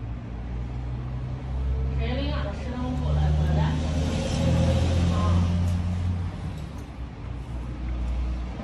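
A steady low rumble, with a person's voice talking over it from about two seconds in until about six seconds in.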